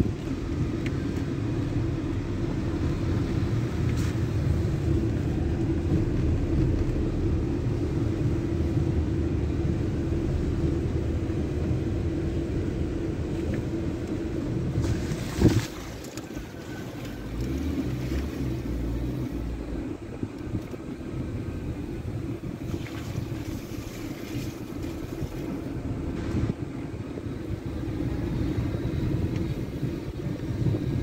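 A car driving slowly on a sandy dirt road, heard from inside the cabin as a steady low engine and tyre rumble. About halfway through there is one sharp knock, the loudest sound, after which the rumble is quieter and more uneven.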